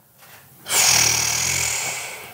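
A man's long, breathy sigh with a low groan of voice in it. It starts just under a second in and fades out over about a second and a half.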